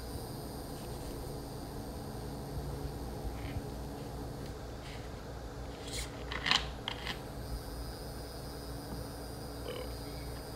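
Plastic water bottle being handled, with a short run of sharp crinkles and clicks from the bottle and its cap about six to seven seconds in, over a steady low background hum.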